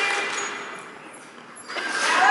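A person laughing briefly, breathy and fading over the first second, followed by a quiet stretch of room sound in a large hall.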